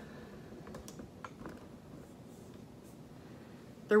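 Quiet room with a few faint, scattered light clicks and soft rustles as a dog moves about and is petted.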